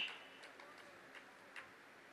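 Near silence in a pause in a man's amplified speech. The end of a word fades out at the start, then only quiet room tone remains, with a few faint ticks.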